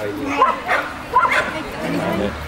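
Small dog barking in several short, high yaps while running an agility course.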